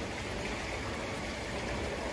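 Steady, even rushing background noise of a large hotel lobby, with no distinct events.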